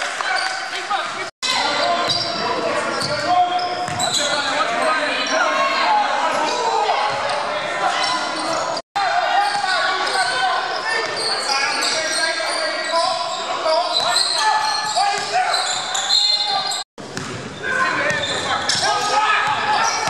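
Basketball game in a gym: the ball bouncing on the hardwood floor amid indistinct shouting and chatter from players, echoing in the large hall. The audio cuts out briefly three times.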